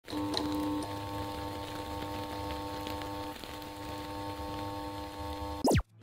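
Intro music: a sustained chord of steady tones over a low rumble, ending near the end with a quick, loud falling sweep that cuts off suddenly.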